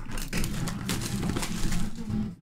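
Plastic wrap crinkling and cardboard rustling as a sealed trading-card box is handled and opened: a dense run of small crackles.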